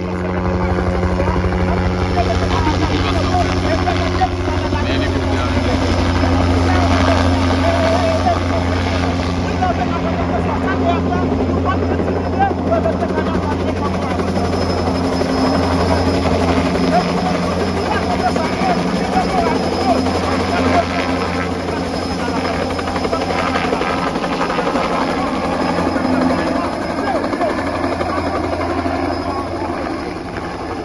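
Low-flying two-bladed light military helicopter, its rotor and engine running loud and steady overhead, with people's voices underneath.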